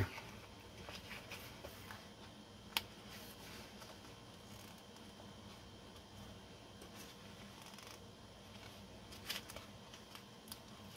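Faint paper rustling and small clicks as clear stickers are picked at and peeled from their sheet, with one sharper tick about three seconds in and a few more near the end.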